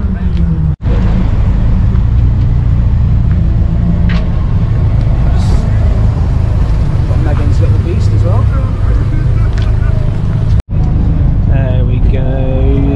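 A loud, steady low rumble of car engines running nearby, with indistinct talking in the background. The sound drops out briefly twice, about a second in and near the end.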